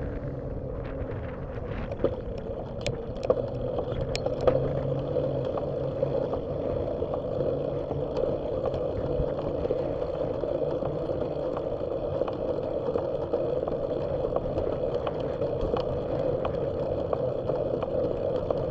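Steady road and wind noise of a bicycle ride picked up by a bike-mounted camera, with a few sharp clicks and rattles, most of them in the first few seconds. A low engine hum from traffic ahead fades out about five seconds in.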